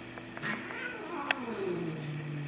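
A cat giving one long, drawn-out meow that falls steadily in pitch and ends in a low held tone, with a sharp click about a second in.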